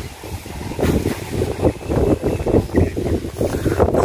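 Wind buffeting the microphone outdoors: an uneven low rumble that swells and dips.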